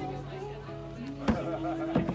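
Background music with steady held low notes under a melody, cut through by two sharp knocks about two-thirds of a second apart, the second as a heavy round lifting stone is set onto the top of a wooden barrel.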